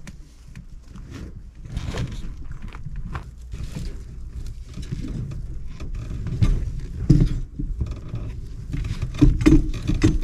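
Rustling, scuffing and light knocks as a long PVC drain pipe is handled and pushed into a fitting, with a few louder bumps in the second half.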